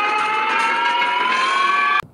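A single long, high-pitched held tone with overtones over a hiss, its pitch rising slowly and steadily, cutting off suddenly at the end.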